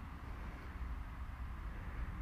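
Faint, steady outdoor background noise: a low rumble under a soft hiss, with no distinct event.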